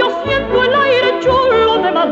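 A woman singing a Spanish-language song with vibrato over an orchestral accompaniment, played from a digitized Soviet long-playing record.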